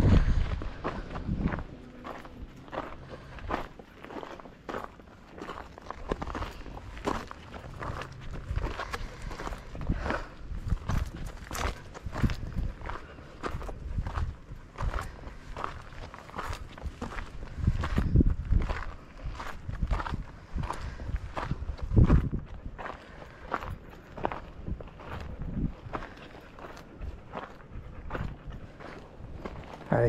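Footsteps on a gravel trail at a steady walking pace, a short crunch with each step. A few louder low rumbles break in, the loudest about two-thirds of the way through.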